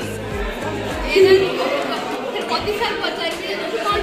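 Overlapping chatter of several young women's voices over background music with a repeating bass beat. One voice rises louder a little over a second in, and the bass drops away soon after.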